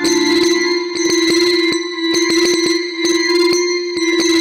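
Earthquake data sonification: bell-like tones struck two or three times a second over a steady held tone. Each struck tone marks one earthquake, its pitch set by how big the quake was.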